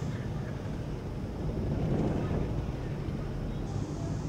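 Low, steady rumble of harbour ambience over the water, swelling a little around the middle.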